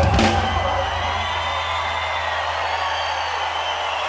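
A live rock band ends a song on one final crash right at the start, then the last chord and a low bass note ring on steadily while the crowd cheers.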